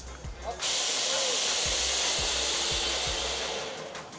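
A ground firework fountain catching about half a second in and spraying sparks with a loud, steady hiss for some three seconds, tailing off near the end.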